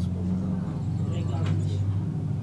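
A low, steady motor rumble with soft speech over it.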